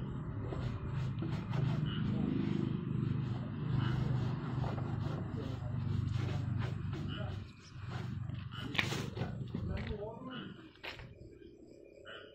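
A cloth rubbing against a car's lamp lens and body close to the microphone, scrubbing off leftover window-tint glue, with a steady low rumble under the strokes. About seven and a half seconds in, the rumble drops away and only scattered, quieter rubs and knocks remain.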